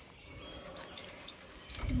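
Outdoor shower running with the hot tap open: a faint, even hiss of water spraying from the shower head.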